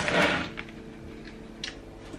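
A brief breathy, noisy burst at the start, then quiet room tone with a faint steady hum and a single small click near the end.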